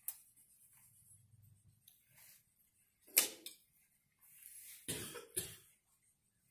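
A person coughing: one sharp cough about three seconds in and two more close together near the end, with quiet room tone between.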